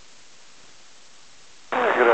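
Steady hiss of an airband radio receiver on an idle tower frequency. Near the end a transmission keys in abruptly, with a sudden jump in level to a narrow-band radio voice.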